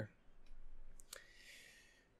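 Two faint, sharp clicks about a second in, followed by a faint steady high-pitched tone over low hiss.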